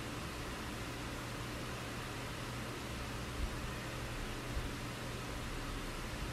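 Steady hiss with a low hum underneath: the background noise of an online-meeting audio line. Two faint soft knocks fall about three and a half and four and a half seconds in.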